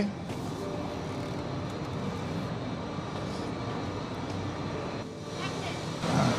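Steady factory background noise: an even rushing hum with faint steady tones underneath, dipping briefly near the end.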